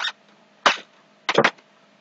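Marker strokes on paper: a short scratchy stroke about two-thirds of a second in, then two more close together about a second later, as a word is written by hand.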